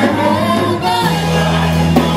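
Live gospel music: several singers over a band with a drum kit and a sustained bass line that changes note about a second in.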